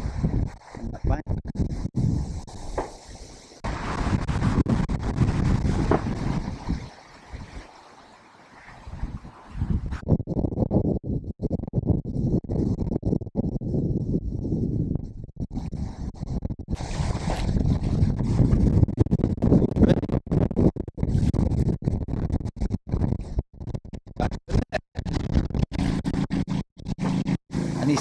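Strong wind buffeting the microphone: a low rumbling noise that surges and drops unevenly, easing off briefly about seven to nine seconds in.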